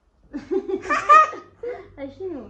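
A young child laughing in quick, short bursts, peaking in one loud, bright burst of laughter about a second in.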